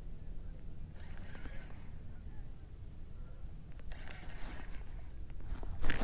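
Steady low wind rumble on the camera microphone, with faint scrapes and clicks from handling the rod and baitcasting reel, growing a little louder near the end.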